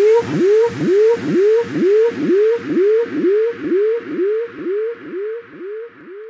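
Closing bars of a future house track: a synth note that slides up in pitch, repeated about three times a second, fading out over a fading hiss.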